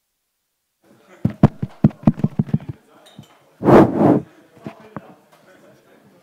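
Handling noise on a live microphone just switched on: a quick run of about ten knocks, then a loud rustle or rub on the capsule, then a few faint clicks.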